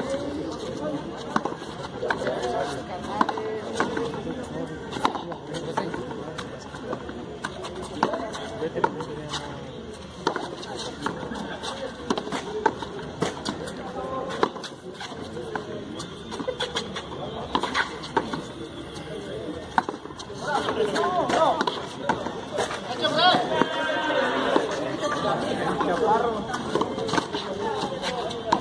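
Voices and chatter of people at the court, with sharp knocks scattered through them as the ball strikes the frontón wall and the players' gloved hands during a rally.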